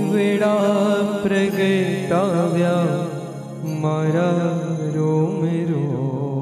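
A solo voice singing a Jain devotional stavan in long, ornamented held notes over a steady instrumental drone.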